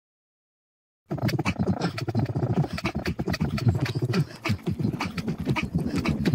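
Opening of an electronic instrumental track, starting abruptly about a second in out of silence: a sampled, animal-like gruff vocal sound with many rapid clicks, before the beat and bass come in.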